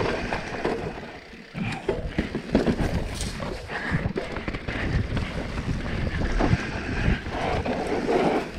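Santa Cruz Nomad mountain bike ridden fast down dirt singletrack: tyres rolling over hardpack and leaf litter, the bike rattling and knocking over bumps and rocks, with wind rushing on the microphone. A brief quieter moment about a second in, then the knocks pick up again.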